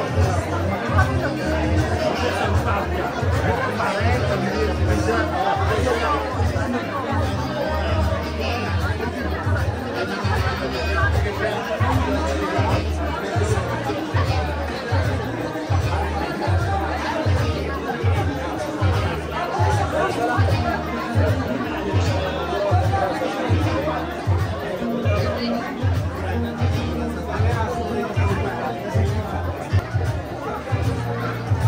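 Music with a steady bass beat, about two beats a second, playing under the continuous chatter of a crowd of guests.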